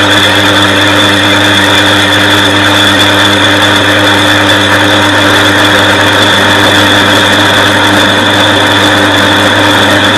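Metal lathe running with its cutting tool facing a cast-iron brake disc on the faceplate: a steady hum with a constant high whine over the noise of the cut.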